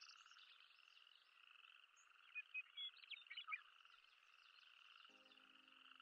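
A very faint chorus of small calling animals: a steady pulsing trill, with a few short, slightly louder chirps between about two and three and a half seconds in.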